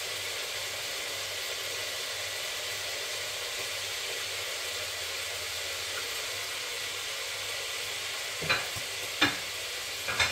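Steady frying sizzle of food in hot oil, with two sharp knocks near the end.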